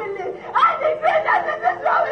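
A person laughing, with speech mixed in.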